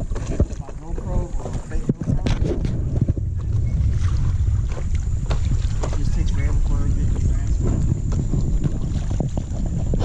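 Wind rumbling on the microphone of a paddle board moving down a river, with water splashing and scattered sharp knocks throughout. Indistinct voices come and go.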